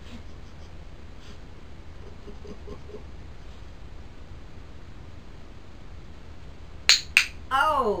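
Hand-held training clicker clicked twice in quick succession near the end, two sharp clicks about a third of a second apart, marking the cat's correct retrieve.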